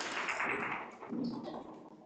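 Audience applauding, dying away about two seconds in.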